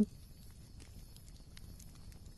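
Faint background noise, a low rumble and hiss with a few soft scattered ticks.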